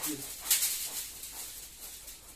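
Twig massage brooms swished through the air above the body: one loud, sharp whoosh about half a second in that trails off.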